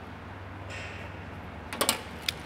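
Steel tape measure blade sliding back into its case with a hiss, then a quick run of sharp clicks near the end as it winds in.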